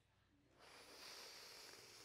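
A man blowing hard into a balloon: one long, breathy rush of air starting about half a second in and lasting about a second and a half.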